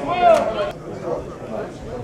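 People shouting at a lacrosse game: a loud, drawn-out call in the first part of a second with a sharp clack in it, then fainter overlapping voices.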